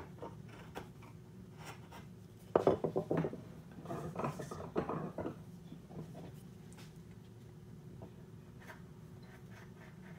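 Freshly sharpened steel skew chisel paring across the end of an oak board by hand: a run of short scraping, slicing strokes from about two and a half to five seconds in, then only scattered faint clicks. A steady low hum lies under it throughout.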